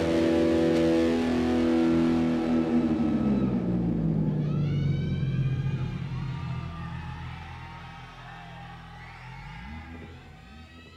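Electric guitar holding a sustained chord that dives down in pitch about three seconds in and then fades away, with high swooping, gliding tones over it as it dies out.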